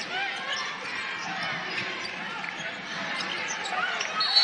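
A basketball dribbled on a hardwood court, with short sneaker squeaks over the hum of the arena.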